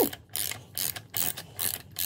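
A ratcheting wrench clicking in a string of short bursts as it turns the forcing screw of a puller pulling the crank pulley (harmonic balancer) off a GM 5.3 LS V8 crankshaft.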